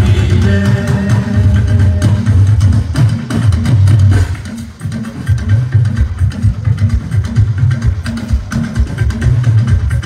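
Loud live fuji band music: heavy drums and percussion with electric guitar, dipping briefly about halfway through.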